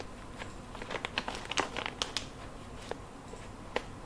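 Filled plastic pillow-pouch sachet crinkling as it is handled, a quick run of crackles in the first half and a few single crinkles later.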